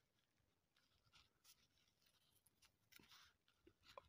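Faint scratching of a ballpoint pen writing on lined notebook paper, in short irregular strokes.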